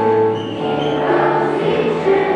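A large children's choir singing, a melody of held notes that move from one pitch to the next.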